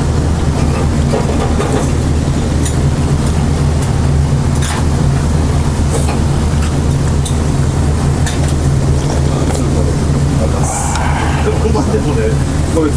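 Loud, steady low hum of restaurant kitchen machinery such as ventilation fans, running without change. Short, noisy sounds of noodles being slurped and eaten come now and then over it.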